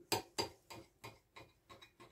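Kitchen knife cutting through a pan-fried egg sandwich on a plate: a series of short crisp clicks, about three a second, loudest at first and then fading.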